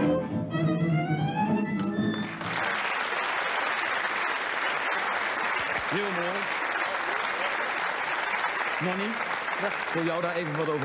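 Gypsy-jazz violin melody over double bass and guitar, played from a poor-quality bootleg VHS tape. It breaks off about two seconds in, and a studio audience applauds steadily for the rest.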